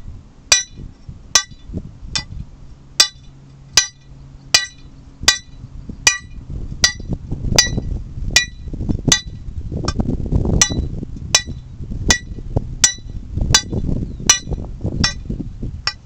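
Lump hammer striking the head of a steel hand-drill rod held against rock, a steady rhythm of ringing metallic blows a little more than once a second. This is two-man hand drilling of a shot hole the old Cornish way: one man turns the steel between blows while the other strikes.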